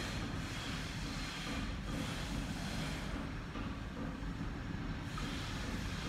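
Steady low background rumble with no distinct events: room noise.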